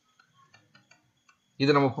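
Faint, scattered light clicks and taps of a stylus writing on a tablet. Speech starts near the end.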